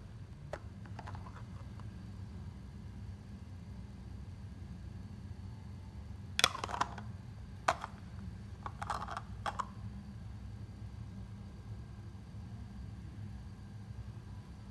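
A few light clicks and taps, about six and a half to nine and a half seconds in, as a plastic lid is handled and lifted off a drinking glass, over a steady low background hum.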